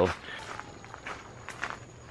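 Footsteps on a gravel path: a few soft, irregular steps.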